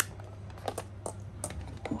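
Handling noise from a small plastic electric beard-straightening comb: about five sharp clicks and taps spread over two seconds as it is turned over in the hands, over a steady low hum.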